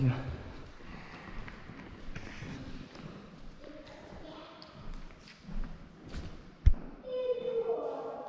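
Faint voices in a large echoing hall, with one sharp thump about two-thirds of the way through and a child's high-pitched voice near the end.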